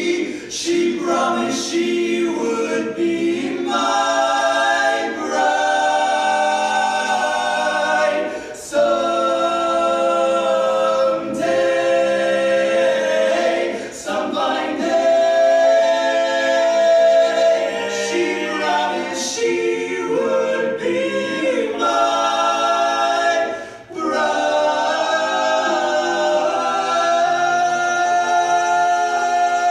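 Barbershop quartet singing a cappella in close four-part harmony: sustained chords with a few brief breaks between phrases.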